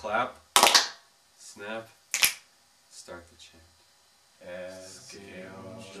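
Two loud, sharp hand claps about a second and a half apart, between short bits of a group of boys' chanting voices. From about four and a half seconds in, the boys chant together steadily.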